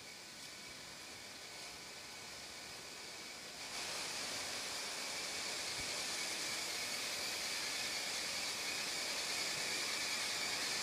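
Steady hiss and hum of paper-mill machinery, getting louder with a step up about four seconds in, with a few faint steady whining tones over it.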